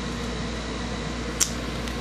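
Room air conditioner running, a steady hum and hiss, with one sharp click about one and a half seconds in.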